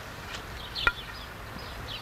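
Small birds chirping in short, repeated high calls, with one sharp knock a little under a second in, the loudest sound.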